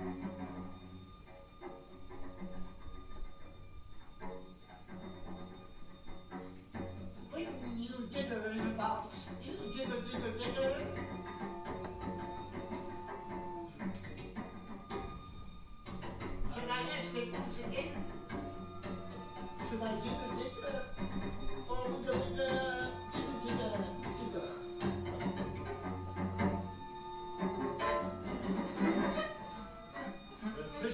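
Bowed viola, cello and double bass improvising together: sparse low held tones at first, growing busier about eight seconds in with sustained notes and quick, shifting bowed figures.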